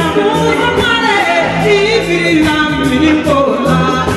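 A woman singing live into a microphone over an amplified band, her melody sliding up and down above sustained bass notes and a steady beat of percussion.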